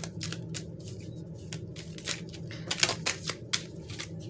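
A deck of tarot cards shuffled by hand: quick, irregular clicks and slaps of the cards, coming thicker about three seconds in.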